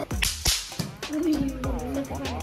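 Two sharp cracks about a third of a second apart just after the start, followed by a held, slightly wavering tone.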